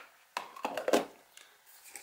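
A few short clicks and taps in the first second, the loudest just under a second in: small handling noises of hands and objects on a workbench.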